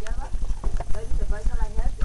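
Indistinct voices of people talking quietly, over a continuous low, fluttering rumble.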